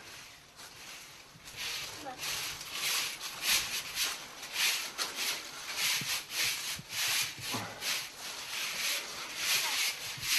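A shovel scraping and scooping through sawdust-laden compost in a composting toilet chamber, a rough scrape a few times a second starting about a second and a half in.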